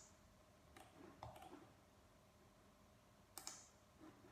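Near silence with a few faint, sharp clicks: three in the first second and a half and one more near the end.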